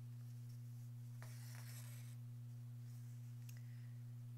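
Faint rasp of embroidery floss being drawn through fabric stretched in a hoop, about a second in and lasting about a second, followed by a couple of light ticks, over a steady low hum.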